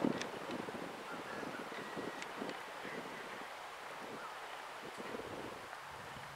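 Wind on the microphone: a steady rushing with a few faint soft knocks.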